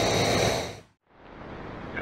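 Butane canister camp stove burner hissing steadily under a pot on the boil, with a faint high whine, fading out just under a second in. A quieter, even outdoor background follows.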